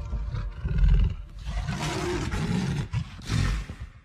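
A big cat's roar, played as an end-card sound effect: a deep, rough growl in three surges, the first the loudest, fading out at the end.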